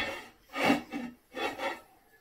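Two short sniffs over a pot of cooked potatoes, smelling the food.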